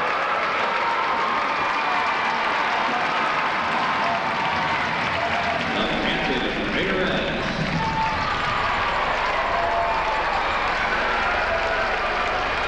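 Arena crowd cheering and shouting, a steady dense wash of many voices at once.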